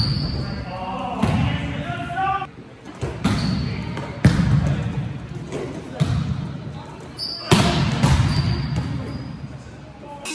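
A volleyball being struck back and forth in a large gym: sharp slaps of hands and forearms on the ball about every one to two seconds, each ringing in the hall, with short high shoe squeaks on the court and players' voices calling.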